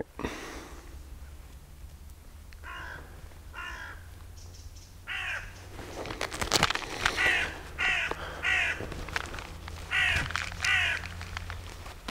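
A crow cawing again and again, about ten calls in short runs of two or three, starting about two and a half seconds in.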